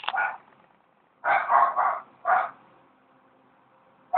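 A dog barking: three short barks in quick succession just over a second in, then a fourth a moment later.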